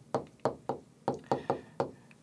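Stylus pen tapping and ticking against the glass of a touchscreen display while a word is handwritten, a quick uneven run of about eight or nine short, sharp taps.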